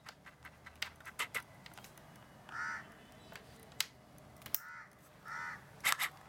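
Scattered small plastic clicks and taps as a yellow RJ45 Ethernet plug is fumbled at and pushed into a MacBook Pro's Ethernet port, the sharpest of them the loudest sounds. A bird calls three short times in the background, about two and a half seconds in, then twice near the end.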